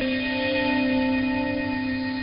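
Radio Thailand's interval signal, received over shortwave on 9940 kHz: one long held musical note. The interval signal is being looped in place of the scheduled English programme.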